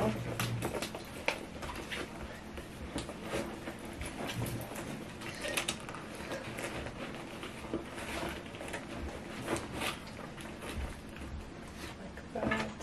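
Items being packed into a large tote bag: irregular rustling of fabric with small clicks and knocks as plastic cases and other objects shift against each other inside the bag.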